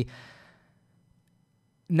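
A man's breath out, a soft exhale that fades away over about half a second, followed by a silent pause before he speaks again near the end.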